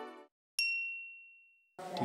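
Intro music stops, then a single bright, high-pitched ding rings out and fades away over about a second: a chime sound effect marking the title card.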